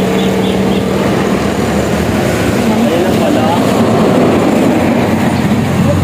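Highway traffic: a large motor vehicle passing close by, with a steady low engine note that swells and shifts in pitch about halfway through.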